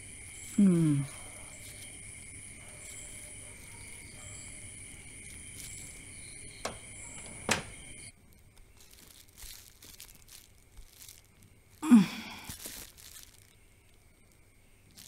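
Crickets chirping steadily in the night, with a woman's short sigh about a second in and two sharp knocks around seven seconds as a wooden front door shuts. Then the crickets stop, leaving faint rustling of foil gift wrap and another short sigh near the end.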